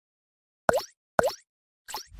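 Three short cartoon plop sound effects, about half a second apart, each a quick dip and rise in pitch; the third is fainter.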